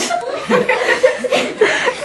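Children laughing and chuckling, with some talk mixed in.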